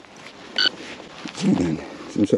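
A metal detector gives one short, high electronic beep about half a second in while soil is sifted by hand over a dig hole. A louder, low, voice-like grunt follows about a second and a half in.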